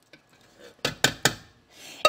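Faint pour of almond milk into a stainless steel saucepan, then three quick, sharp knocks of kitchenware about a second in, each a fifth of a second apart.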